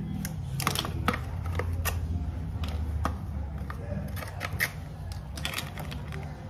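Irregular sharp clicks and crinkles from gloved hands handling a tube of hair colour and its packaging, over a low steady hum.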